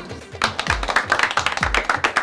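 A small group clapping their hands, starting about half a second in, over background music with a steady beat.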